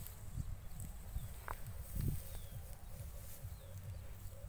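Wind rumbling on the phone's microphone in an open field, with a few faint, short high chirps.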